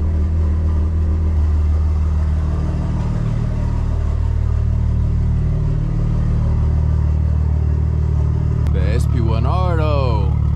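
Toyota GR Supra's engine idling steadily just after being started, a low even engine note.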